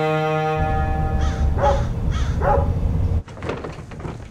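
A sustained string chord from the score cuts off under a second in and gives way to a deep rumble with four short animal calls. Near the end the sound drops suddenly to a quieter room with light knocks.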